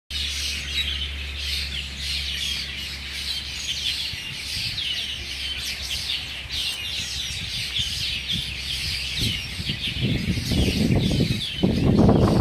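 Many small birds chirping in the trees, a dense, continuous chorus of short high calls. A low steady hum sits under it for the first few seconds, and a louder rumbling noise builds near the end.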